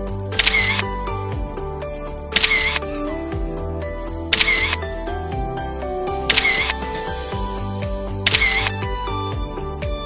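Background music with a steady beat, overlaid with a camera shutter click sound effect five times, about every two seconds, each click the loudest thing in the mix.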